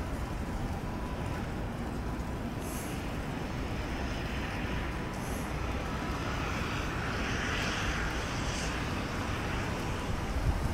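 Outdoor night ambience: wind rumbling on the microphone over a steady distant city hum, swelling slightly from about six to nine seconds in.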